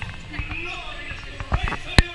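Indistinct voices, with a few sharp knocks in the second half, the loudest at the very end.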